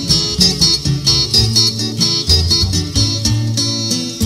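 Instrumental passage of a pirékua, a P'urhépecha song, with acoustic guitars strummed in a steady rhythm over moving bass notes, and no singing.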